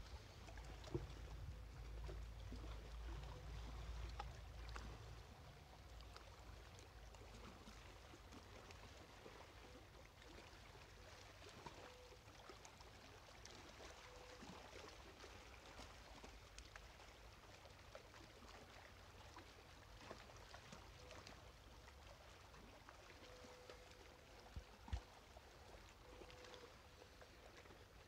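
Near silence: faint outdoor ambience by calm open water. There is a low rumble for the first few seconds and a couple of faint ticks near the end.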